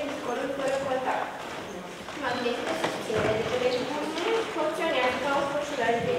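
A girl's voice reading aloud from a paper in continuous speech.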